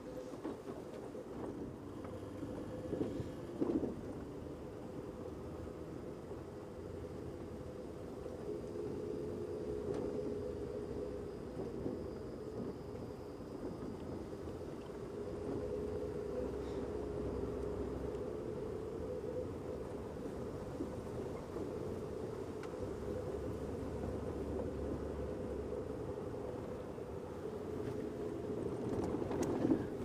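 Safari game-drive vehicle's engine running as it drives, a steady low drone with a slightly wavering hum; it gets a little louder about a third of the way in.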